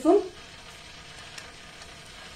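Ghee heating in a pan, giving a faint steady sizzle of small bubbles.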